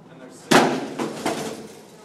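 A metal-framed chair thrown down onto a carpeted floor, landing with one loud crash about half a second in, followed by two smaller knocks.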